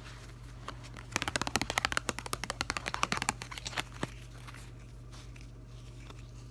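A deck of playing cards flicked and riffled in the hands: a quick run of card clicks starts about a second in and lasts about two seconds, followed by a few single clicks.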